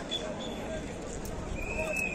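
Street crowd with people's voices in the open air, and a high steady tone starting about one and a half seconds in.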